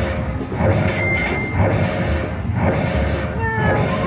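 Video slot machine's win celebration: a musical jingle repeating about once a second while the win meter counts up, over the busy din of a casino floor.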